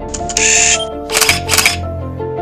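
Background music with a camera shutter sound effect laid over it: a short high-pitched burst about half a second in, then two sharp clicks about a second and a half in.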